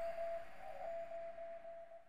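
A single steady held tone, slowly fading, over faint hiss.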